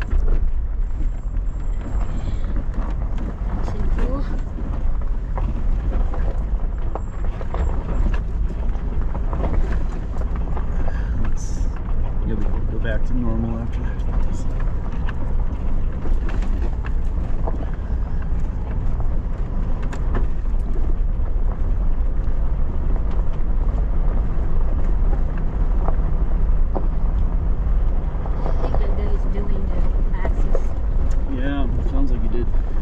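Four-wheel-drive vehicle driving over a loose gravel and rock road, heard from inside: a steady low rumble of engine and tyres, with frequent small knocks and rattles as the wheels go over stones.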